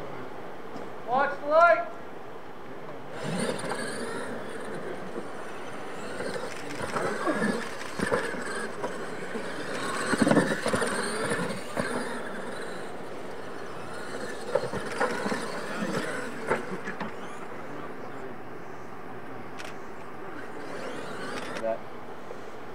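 Radio-controlled monster trucks racing on a dirt track: motor whine and tyres churning through dirt over a steady hiss, with a few sharp knocks as they land jumps. It starts suddenly about three seconds in and cuts off just before the end.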